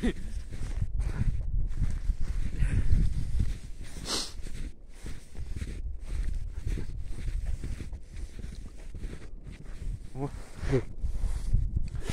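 Low rumble and rustling of someone moving and tumbling in snow, with a brief swish about four seconds in. A short voiced exclamation, "Ukh!", comes about ten seconds in.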